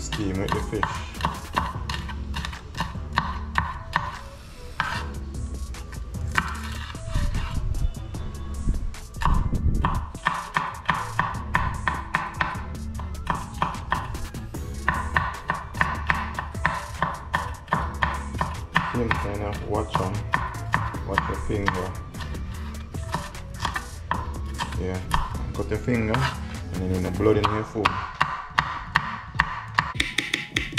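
Kitchen knife dicing a green sweet pepper on a wooden cutting board: a steady run of blade taps on the board, a few a second, over background music.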